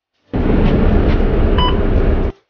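A bus fare card reader gives one short electronic beep, accepting a contactless card tap for a new ride, over a loud, steady, low rumbling noise that cuts in suddenly just after the start.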